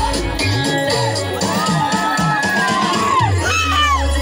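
Loud dance music with a steady bass beat, and a crowd of dancers shouting and cheering over it. High calls that rise and fall come in from about halfway through.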